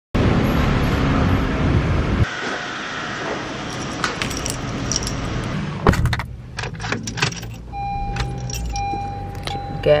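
Car keys jangling amid rustling handling noise as someone settles into a car, then scattered clicks. Near the end a steady electronic chime from the car sounds for about two seconds.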